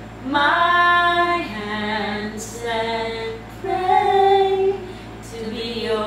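Two women singing together without accompaniment, in phrases of long held notes with short breaks between them.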